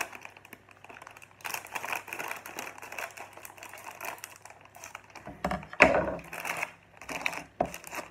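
Clear plastic bag of Lego pieces crinkling in bouts as it is handled and cut open with scissors, loudest just before six seconds in, with a sharp click near the end.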